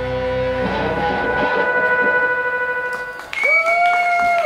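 Live rock band's amplified guitars and keyboard letting held notes ring out as the song ends. The low drone cuts out about a second in while higher sustained tones keep sounding, and a new loud held tone swells in about three seconds in.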